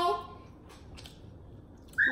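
A child's drawn-out sung note cuts off just after the start. Then it is quiet, with a couple of faint clicks about a second in from people chewing hard-shell tacos.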